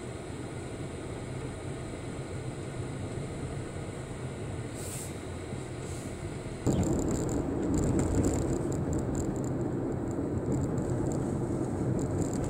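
Road and engine noise inside a moving car's cabin. About two-thirds of the way in, it cuts suddenly to a louder stretch of driving, with tyres running on a wet road.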